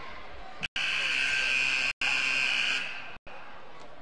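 Basketball arena horn sounding one steady blast of about two seconds, starting under a second in, over the gym's crowd noise. The audio cuts out briefly several times, once in the middle of the blast.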